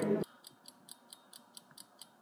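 Cafe background noise cuts off suddenly, then a ticking sound effect runs on with light, high ticks, about four to five a second.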